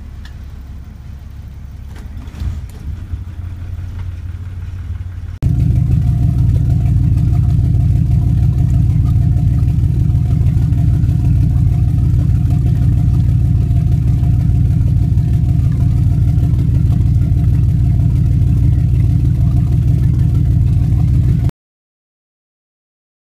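Hino 175 hp marine diesel just cold-started, running at a steady idle. The first five seconds are a quieter rumble; then, heard at the starboard engine's wet exhaust outlet, it becomes loud and steady before cutting off suddenly near the end.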